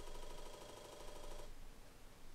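Apple II 5.25-inch floppy disk drive buzzing and rattling as its head steps and recalibrates during boot, stopping suddenly about a second and a half in.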